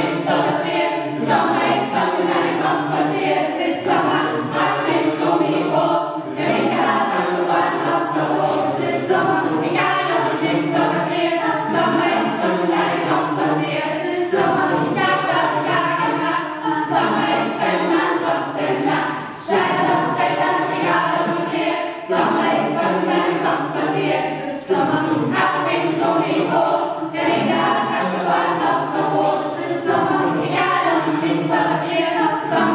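A mixed choir of men's and women's voices singing a song together, the singing going on without a break apart from short pauses between phrases.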